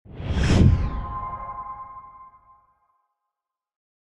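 Whoosh sound effect that swells and peaks about half a second in, leaving a ringing tone that fades out over about two seconds.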